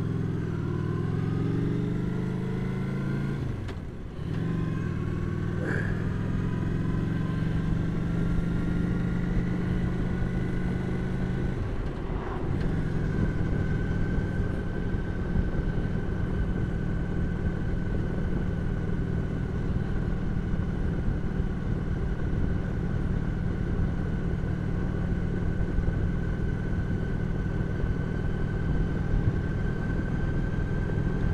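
Cruiser motorcycle engine pulling away and accelerating, its pitch rising, with two brief breaks for gear changes about four and twelve seconds in, then running at a steady speed.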